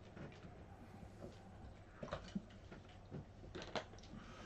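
Faint sounds of a man drinking from a plastic water bottle: a few soft clicks and knocks, the clearest near the end.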